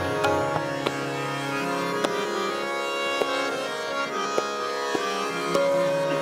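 Hindustani classical music in raga Shudh Kalyan, vilambit (slow tempo), with the singer resting: a steady tanpura drone with sparse, widely spaced tabla strokes, and an accompanying instrument holding a note near the end.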